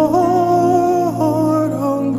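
Slow worship song: a voice holds one long, slightly wavering note for about a second, then glides down to a lower note. Soft, sustained ambient backing music plays underneath.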